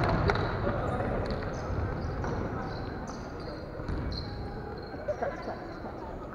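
Volleyball thudding on the wooden floor of a large, echoing sports hall, one hit soon after the start, over a hall ambience that slowly fades, with faint distant voices.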